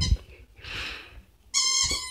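A pet's rubber squeaky toy squeaking: the tail of one squeak right at the start, a soft rustle, then a short, steady, high-pitched squeak near the end.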